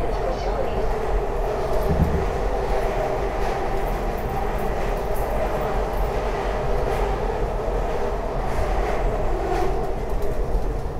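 SEPTA Market–Frankford Line train running along elevated track, heard from inside the car: a steady rumble of wheels on the rails, with a brief thump about two seconds in.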